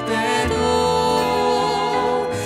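A man and a woman singing a Korean worship song together, backed by a live band with violin; the notes are held and the bass moves to a new note about half a second in.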